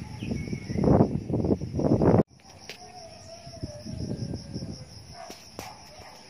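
Insects chirring in a steady, finely pulsing high trill. For the first two seconds loud, gusty low rumbling, wind buffeting the microphone, covers them, then cuts off abruptly, leaving the insects with faint bird calls.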